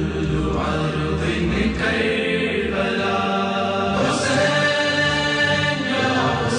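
Chanted vocal music, with long held notes in the second half.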